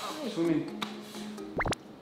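A quick cartoon 'pop' sound effect about a second and a half in, its pitch sweeping sharply up and straight back down, over light background music.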